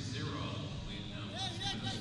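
Wrestling-arena ambience: a steady low hum with a raised voice calling out briefly in the second half, likely from mat-side or the stands.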